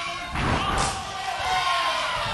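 A wrestler slammed down onto the wrestling ring mat: one heavy thud about a third of a second in.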